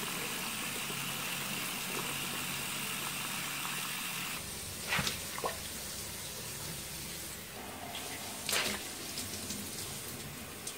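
Bathroom sink faucet running onto a cleaning rag held under the stream, shut off about four seconds in. It is followed by a couple of short, sharp handling sounds.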